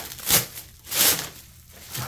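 Black plastic wrapping crinkling as it is pulled and unwrapped by hand, in two short bursts.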